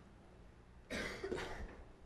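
A short cough about a second in.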